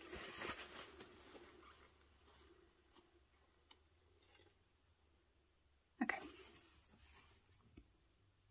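Near silence with a few faint, light clicks as a fountain pen is handled while it is being filled from an ink bottle.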